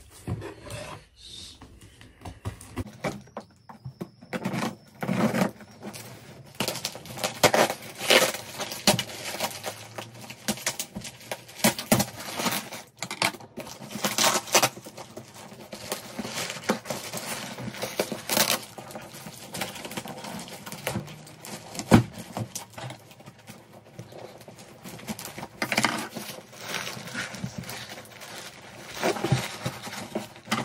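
Packing tape being ripped and peeled off a cardboard shipping box, with the cardboard scraping and rustling as the box is opened, in irregular bursts with a few louder rips.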